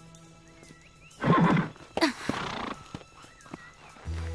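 A horse gives two short, breathy calls, the first and louder about a second in, the next about a second later, as a rider climbs into the saddle. Soft background music plays under it.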